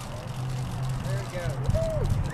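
Wind rumbling on the microphone, with a few people's voices calling out briefly in the second half.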